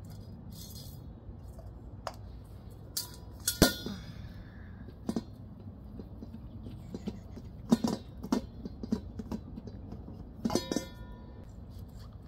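A plastic sink drain fitting being handled and screwed into a drilled aluminum bowl: scattered clicks and knocks of plastic against metal. A few of them set the bowl ringing briefly, the loudest a few seconds in, all over a low steady hum.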